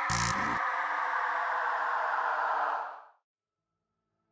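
Synthesized sci-fi trailer sound effect: a dense hum of several tones drifting slowly down in pitch, struck by a short hard hit at the start. It fades out quickly about three seconds in.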